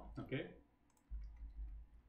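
A short spoken fragment, then a few soft clicks of a computer keyboard and mouse during code editing, over a low hum.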